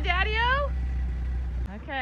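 Volkswagen Vanagon Westfalia camper van's engine running at a low steady idle while the van is eased into a parking spot, cutting off about one and a half seconds in. A high voice calls out, rising and falling in pitch, at the start, and again briefly near the end.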